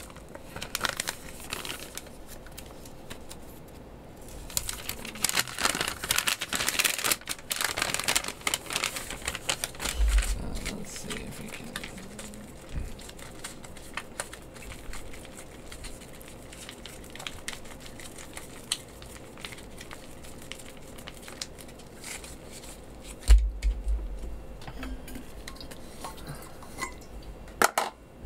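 MRE plastic and foil ration pouches crinkling and rustling as they are handled, busiest in the first third. There are two dull thumps on the table, the louder one late on.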